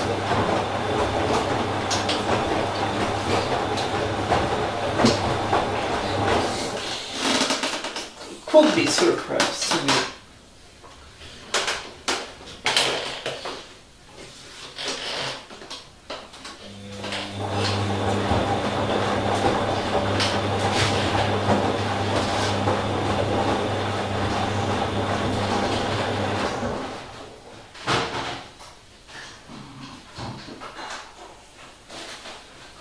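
Bosch Logixx 6 front-loading washing machine tumbling a wet load. The drum motor runs with a steady hum for about seven seconds, then pauses for several seconds with water sloshing and the laundry knocking, then runs again for about ten seconds and stops near the end.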